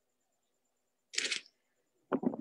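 Near silence on a video call, then one short hiss-like burst of noise a little over a second in, lasting about a third of a second.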